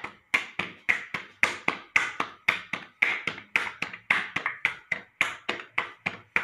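Flatbread dough being slapped by hand to flatten and shape it, in a quick, even run of slaps, about four or five a second.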